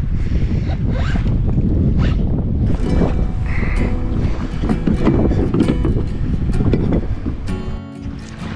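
Wind buffeting the camera's microphone out on the open ocean, a steady low rumble, with scattered light clicks and knocks from handling the fish and tackle.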